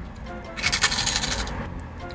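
Crisp cinnamon twists being bitten and chewed close to the mouth: a dense run of crunching crackles for about a second in the middle, over faint background music.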